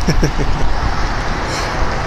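Steady low rumble of vehicle engines outdoors, with a few short voice sounds right at the start.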